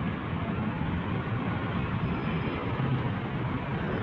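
Steady city street noise: traffic running along a busy road, with no single sound standing out.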